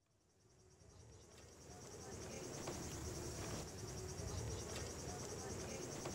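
Crickets chirping steadily over a low rumble, fading in from silence over the first couple of seconds.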